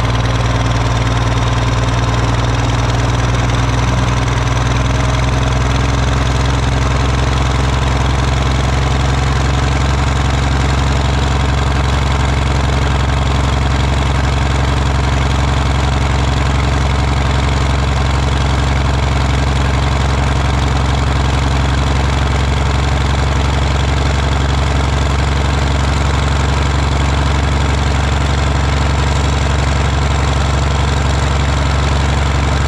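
Irrigation pump engine running loudly and steadily at close range, its pitch creeping up a little in the first few seconds as the throttle is slowly turned up to raise pump volume without jarring the pipes apart.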